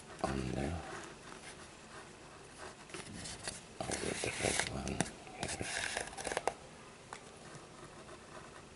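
A brief low vocal sound just after the start, then handling noise as a cord is pulled through a Turk's head knot tied round a cardboard tube: rustling and scraping of cord against the cord and the tube, loudest about four to five seconds in, with a few small clicks.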